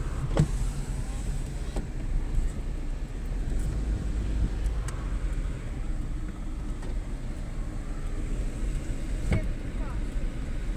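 Car driving, heard from inside the cabin: a steady low engine and road rumble, with a few brief clicks.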